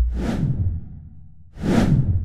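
Two whoosh sound effects from an animated logo intro, one about a quarter second in and one near the end, each swelling up and dying away, over a low rumble that fades out in the first second.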